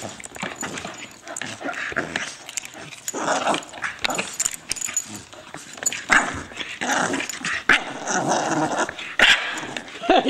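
A bulldog and a corgi play-fighting, growling and barking in short irregular bursts.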